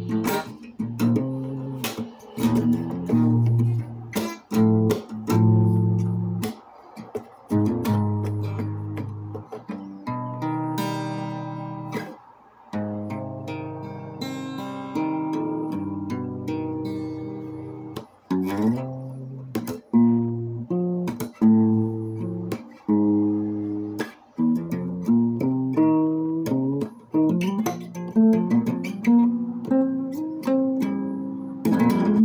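Acoustic guitar played solo, picked chords and melody notes ringing and dying away, with a few brief breaks between phrases.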